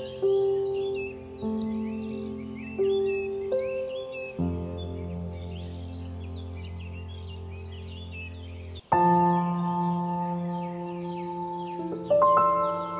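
Soft background music of sustained, held chords that change a few times, with bird chirps layered over them. The music drops out briefly near 9 seconds before the next chord comes in.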